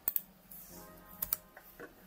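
Computer keyboard clicking: two quick double clicks, one at the start and one just over a second in, over faint background music.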